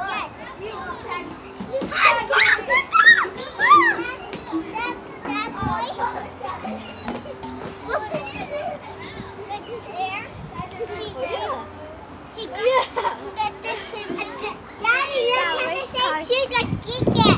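Young children calling out and shrieking as they play, in bursts that are loudest a couple of seconds in and again near the end.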